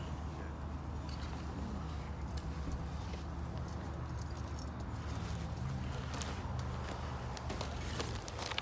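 Steady low outdoor background rumble with a few faint scattered clicks.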